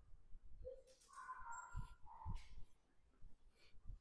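Faint dog whining: a few short, thin high calls, the longest about a second in, with soft footfalls on a stone floor.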